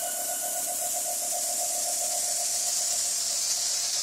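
Electronic-music breakdown: a synthesized hiss that swells in the high end over a fast-pulsing synth tone, with no drums or bass.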